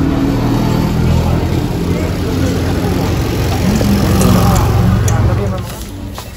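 Engine of a passing auto-rickshaw running steadily under street voices, dying away near the end.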